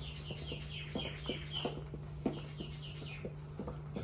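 Feet stepping and landing on a hard floor in the bouncing dance, with irregular knocks, under a run of short, high, falling chirps or squeaks that comes mostly in the first second and a half. A steady low hum sits underneath.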